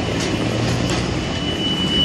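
Skateboard wheels rolling over brick pavers close by, a steady rumble.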